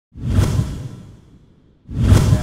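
A whoosh sound effect with a deep boom, coming in suddenly and fading away over about a second and a half; a second, identical whoosh starts right at the end.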